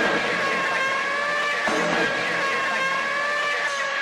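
Dark electronic music passage: a held, slightly wavering synth tone with a swell of noise about every two seconds.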